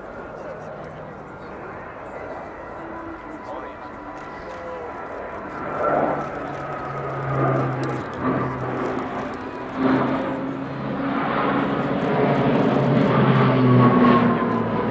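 C-27J Spartan's twin Rolls-Royce AE 2100 turboprops and six-bladed propellers droning as the aircraft comes round in a steeply banked wingover. The sound is a steady low hum with a high tone above it, and it grows louder over the second half as the aircraft closes in.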